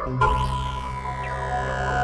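Experimental electronic synthesizer drone: a new low, steady droning tone with its overtones comes in about a quarter second in, with a high tone slowly sliding down in pitch above it.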